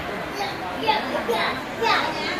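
Indistinct voices of people talking in a shop, with a steady background din of the room.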